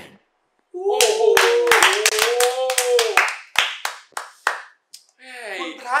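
Hands clapping in applause: a quick run of about a dozen claps, then a few slower ones, under one long drawn-out cheering voice. It starts after a brief silence.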